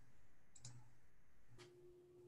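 Near silence, with a few faint clicks about half a second and a second and a half in. A faint steady tone starts just after the second click.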